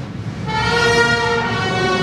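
A large crowd of voices singing a sustained chord together, coming in about half a second in and held steadily.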